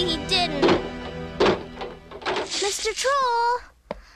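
Cartoon soundtrack: background music with several sharp knocks in the first second and a half. Near the end comes a wavering, wailing voice, a cartoon troll sobbing.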